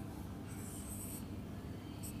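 A marker drawn across a whiteboard: one stroke about half a second in, lasting under a second, over a faint low hum.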